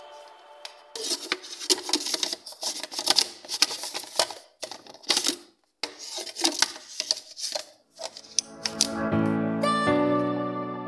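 Clear plastic food processor lid and bowl being handled and fitted together, a quick run of clattering plastic clicks and knocks. Background music with steady tones comes in near the end.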